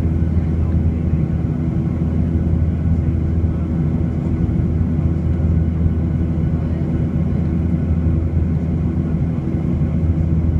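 Boeing 737-800's CFM56-7B turbofan engines heard from inside the passenger cabin as a steady, deep drone with a few held low tones, during the climb after takeoff.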